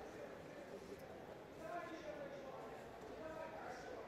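Faint, distant voices of people calling out in a large hall.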